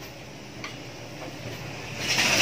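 Pot of broth with onions and fish bagoong boiling, a soft steady bubbling with a few faint ticks.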